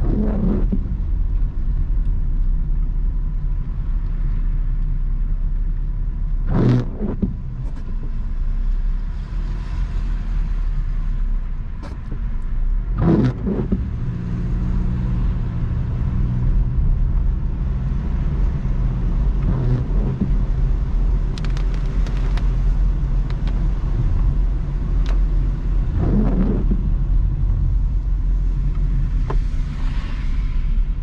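Steady low rumble of a car's engine and tyres on a wet road, heard from inside the cabin, with a windshield wiper sweep about every six and a half seconds: intermittent wipers clearing rain.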